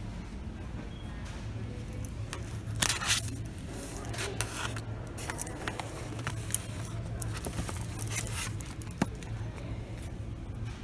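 Close handling noise of items being picked over on a shop shelf: a loud rustle about three seconds in, then scattered sharp clicks and short scrapes, over a steady low hum.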